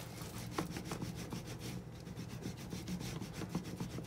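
Wooden rolling pin rolled back and forth over a slice of white sandwich bread on a hard worktop, pressing it flat: a soft, steady rubbing with many faint little clicks.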